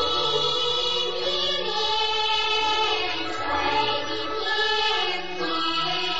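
Chinese Huangmei opera music: sustained singing, with several voices, over traditional instrumental accompaniment.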